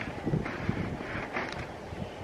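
Wind blowing across a phone's microphone: a steady hiss with a few faint rustles.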